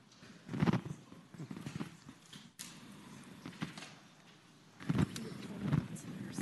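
Faint, indistinct murmuring voices with a few light knocks and clicks, between stretches of near quiet.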